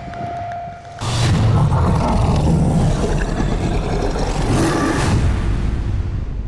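Trailer score and sound design: a held high tone breaks off about a second in into a sudden loud, deep hit and a dense rumbling swell. A brighter burst comes near its end before it fades.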